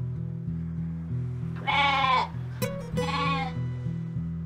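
A goat bleats twice, each call about half a second long with a quavering tone, over background music with a repeating bass line. A short click sounds between the two bleats.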